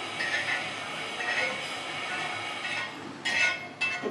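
Steel spoon scraping roasted cumin seeds across a flat tawa griddle into a small steel bowl: a continuous rasping scrape, with a louder burst shortly before the end.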